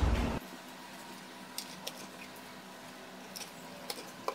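Brief noise at the very start, then a quiet room with a few faint, short clicks from the mesh router nodes and their power plugs being handled.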